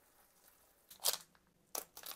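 Short, crackly rips about a second in and again near the end: a plastic kimchi pouch being torn open.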